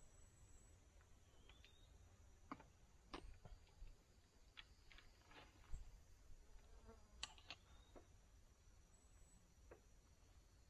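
Near silence, broken by about a dozen faint, scattered clicks and taps as a compound bow is hauled up on a rope and handled by a hunter sitting up in a tree.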